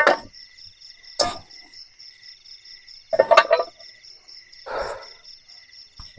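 Night insects chirring steadily in high-pitched pulsing tones. A few short knocks and rustles stand out over them, from camping gear being handled.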